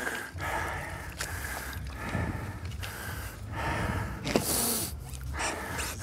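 A person breathing hard and gasping, out of breath after a swim, over rustling and a steady low rumble, with a brief hiss about four and a half seconds in.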